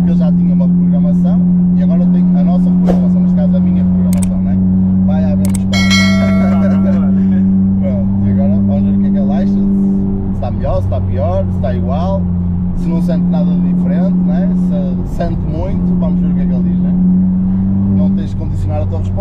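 Volkswagen Golf 7 GTI's turbocharged 2.0-litre four-cylinder engine heard from inside the cabin, a steady drone while driving. Its note drops briefly about ten seconds in and again near fifteen seconds. A short bell-like ringing tone sounds about six seconds in.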